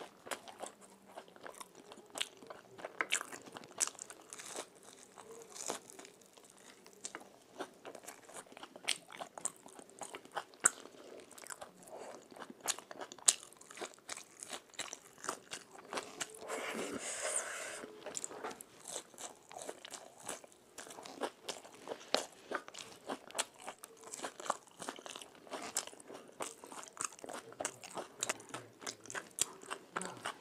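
Close-miked chewing and crunching of fried snacks and raw salad, with many sharp crunches. There is a longer, rougher stretch of crunching a little past halfway through.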